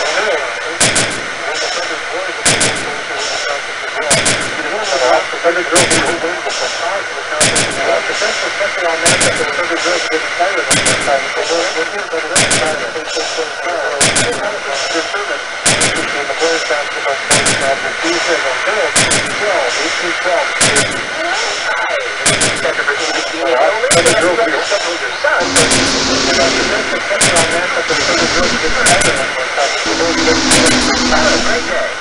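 Experimental noise-rock sound collage: sharp, percussive hits repeat about every second and a half over a dense, churning layer of noise and a steady high ringing tone. About 25 seconds in, a low held tone joins.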